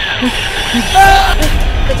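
Old valve-style radio being tuned: a steady static hiss with a whistle sliding down in pitch, then a louder burst of signal with steady tones about a second in.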